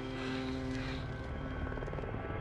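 Military helicopter's rotor blades chopping rapidly and steadily as it flies in.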